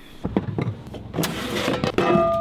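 Handling noise from a handheld camera being moved: a low rumble with a few short knocks, then a hissing rustle in the second half.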